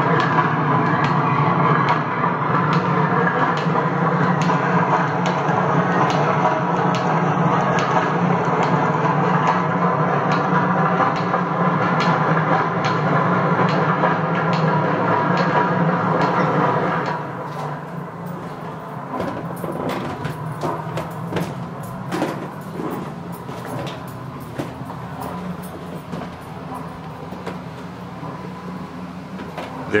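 Recorded sound of flour-mill roller machinery running, played on a loop through an exhibit loudspeaker: a steady, dense mechanical rumble and clatter. About 17 seconds in it becomes quieter and thinner, with irregular knocks.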